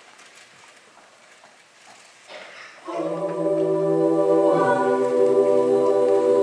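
Jazz choir singing a cappella, entering together about three seconds in with a held chord of many voices, then moving to a new chord a second and a half later.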